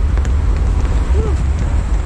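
Wind buffeting the camera microphone on the open deck of a moving ferry: a loud, steady low rumble.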